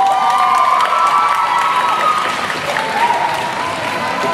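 Audience applauding and cheering just after the music of a rhythmic gymnastics hoop routine stops, marking the end of the routine.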